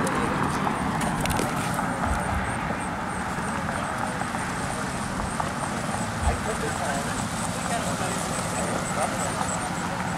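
Background chatter of people talking over steady outdoor noise.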